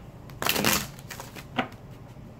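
A deck of tarot cards being shuffled by hand: a longer burst of card noise about half a second in, then a single short snap of cards about a second and a half in.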